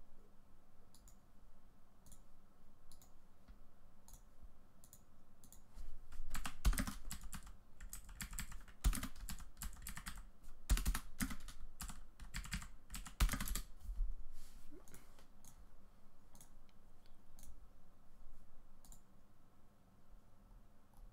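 Typing on a computer keyboard: a busy run of keystrokes in the middle, with scattered single clicks before and after.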